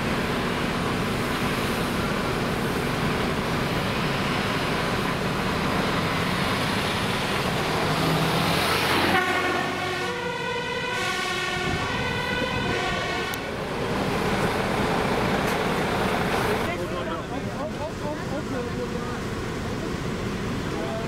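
Fire trucks' diesel engines running as they move along the road. About halfway through, a fire engine's pitched warning signal sounds for about four seconds, its tones stepping between pitches.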